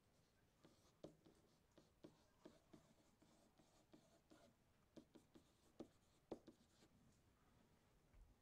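Faint, irregular taps and short scratches of a stylus writing by hand on a digital screen, one small tick per pen stroke.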